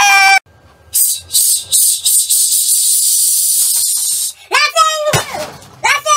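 A man's loud, high-pitched cry that cuts off suddenly, followed by a high hiss lasting about three seconds, then two short shouts near the end.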